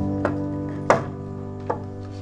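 Background music holding sustained chords, with three sharp knocks over it: one about a quarter second in, a louder one near the middle, and a third near the end.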